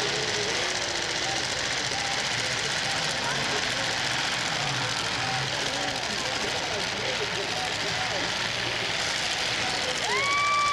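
Steady din of demolition derby cars' engines running under the chatter and shouts of a grandstand crowd, with no single crash standing out.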